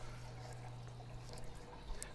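Faint sound of a running aquarium: a steady low hum with light trickling water.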